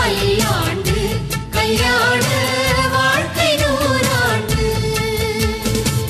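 Indian film-style song with a singing voice and a steady beat. The vocal line bends through a phrase, then settles into a held note near the end.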